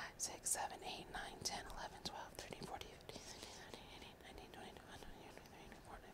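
A woman counting crochet stitches in a whisper under her breath, soft quick syllables that fade quieter in the second half.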